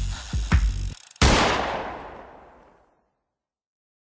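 The song's closing beat stops about a second in. A single gunshot sound effect follows and dies away over about a second and a half.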